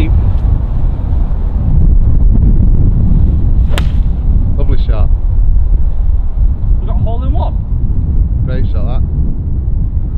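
A forged iron striking a golf ball: one short, sharp click about four seconds in, over heavy wind rumble on the microphone.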